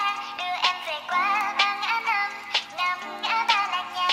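Sped-up Vietnamese pop song: high, pitched-up singing over sustained keyboard chords and a beat.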